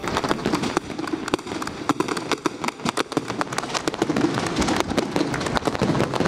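Fireworks going off: a dense, irregular run of sharp pops and crackles.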